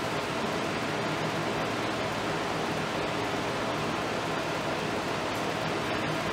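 Steady, even background hiss with a faint low hum underneath, unchanging throughout, with no distinct sounds standing out.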